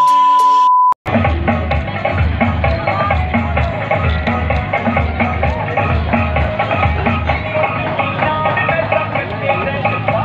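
A steady 1 kHz test-tone beep with a colour-bars edit effect, cut off about a second in. Background music with a steady beat follows.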